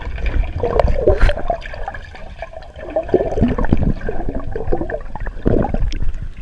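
Pool water sloshing, splashing and bubbling around a GoPro that keeps dipping under the surface, with an otter swimming against the lens; loud and uneven, with many short splashes.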